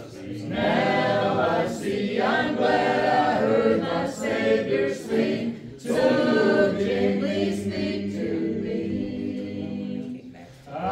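Small congregation of mixed men's and women's voices singing a hymn together, unaccompanied, with short breaks between lines.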